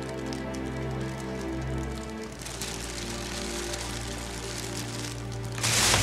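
Dramatic background score of sustained held tones, with a steady hiss joining about two seconds in. Near the end comes a loud whoosh transition effect.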